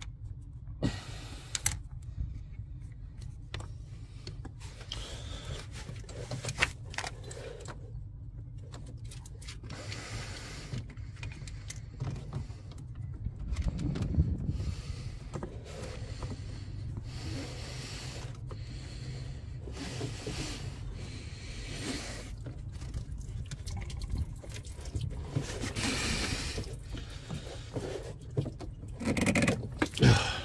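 Hands working among coolant hoses and parts in a van's engine bay: scattered scrapes, clicks and knocks as a pipe is clamped off, over a steady low rumble.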